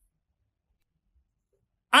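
Near silence: a pause in the narration, with a man's voice starting just at the end.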